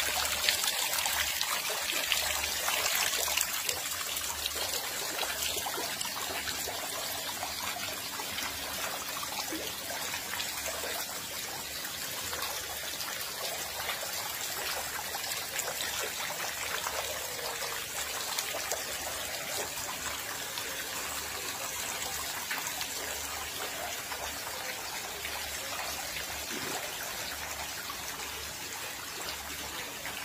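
Water trickling and splashing steadily from a pipe into a concrete tank.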